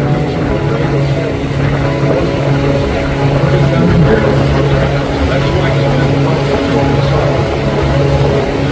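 A boat's engine running at a steady cruising drone, with water and wind noise around it.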